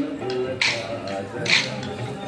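Kolatam sticks struck together in unison by a large group of dancers, a sharp clack about every 0.9 seconds, twice here, over a song with a singing voice.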